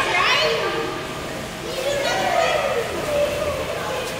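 Children's voices calling and chattering in an indoor pool hall, with high gliding cries, over the general noise of the pool.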